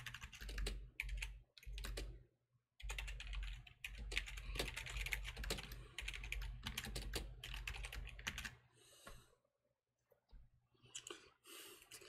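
Typing on a computer keyboard: quick runs of keystrokes, with a short pause about two seconds in, stopping about eight and a half seconds in, followed by a few scattered clicks near the end.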